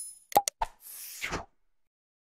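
Animated subscribe-button sound effects: the tail of a chime, then a pop and two quick clicks about half a second in. A short whoosh follows and cuts off about one and a half seconds in.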